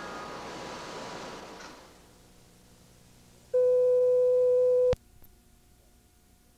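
A soft hiss fades out over the first two seconds. It is followed by one steady, loud electronic beep tone lasting about a second and a half, which cuts off abruptly with a click.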